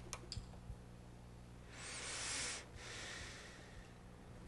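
A few faint clicks, then a breath close to the microphone about two seconds in, over a steady low hum.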